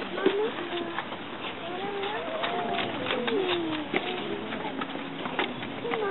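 A group of children talking and murmuring among themselves, several voices overlapping at a moderate level, with scattered light knocks and shuffles from their feet on the risers.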